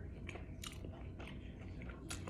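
A person chewing a mouthful of soft tortilla wrap with tuna salad and lettuce: faint, wet mouth clicks a few times a second.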